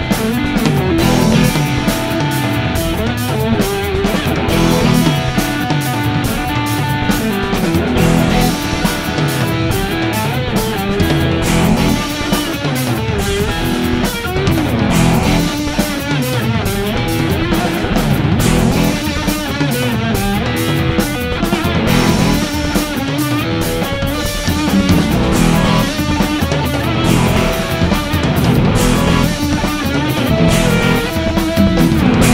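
Instrumental funk-rock band music: electric guitar leading over bass guitar and a drum kit, with a steady driving groove.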